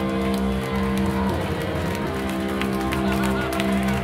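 Live hardcore band playing loud electric guitar chords over drums, with voices over the music.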